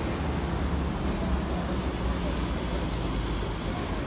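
Steady city-square noise: a constant low traffic rumble under an even hiss of street sound.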